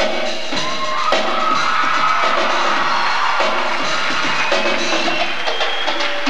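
A drum kit played live in a solo, with busy hits across the drums and cymbals. Sustained pitched tones sound along with the drums.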